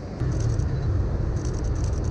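Steady low rumble of city street traffic, with a few faint ticks above it.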